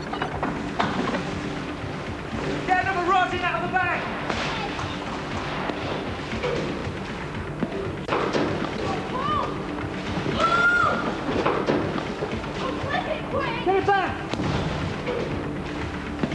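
Background music with a steady low drone, under scattered shouting voices and a few thumps.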